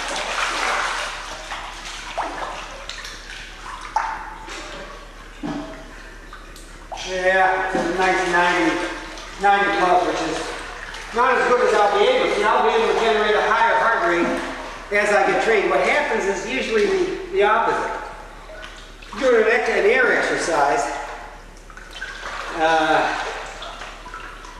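Pool water splashing and sloshing as a person moves through it, then, from about seven seconds in, a voice talking in bursts with the words unclear, over the water sounds of an echoing indoor pool.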